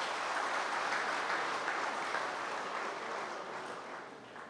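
Audience applauding steadily, the clapping easing off toward the end.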